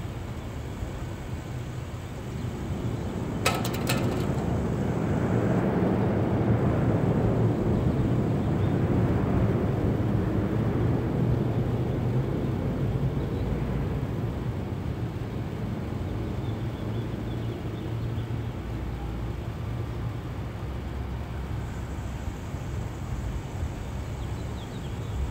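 A passing engine heard from a distance: a low rumble that swells over the first several seconds and fades away again over about fifteen seconds. A brief clatter of clicks comes about three and a half seconds in.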